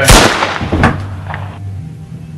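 A single gunshot from a revolver held to someone's head: a sharp crack right at the start that fades over about half a second, followed by a fainter crack a little under a second in, over a steady low hum.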